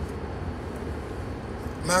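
Steady low rumble of a car on the move, road and engine noise heard from inside the cabin.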